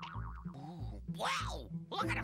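Cartoon soundtrack: comic background music with a low bass note bouncing about twice a second, a wavering comic sound effect at the start, and a sliding sound effect that sweeps up and down about a second and a half in.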